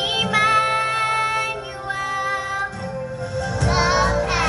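Children's choir singing with instrumental accompaniment, holding long notes.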